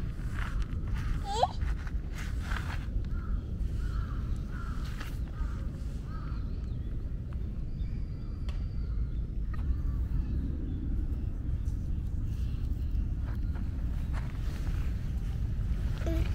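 Wind buffeting the microphone outdoors, a steady low rumble, with a few faint scrapes and a brief short rising squeak about a second and a half in.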